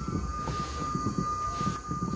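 A hand squeezing and mixing dry tapioca starch with grated coconut in a plastic bowl: a soft, irregular crunching crackle. A steady high-pitched whine runs underneath.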